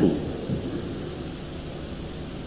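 Steady hiss and background noise of an old recording, heard in a pause between a man's spoken phrases, with the tail of his last word fading at the start.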